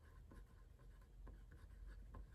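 Faint scratching of a pen writing on paper, a run of short strokes over a low steady hum.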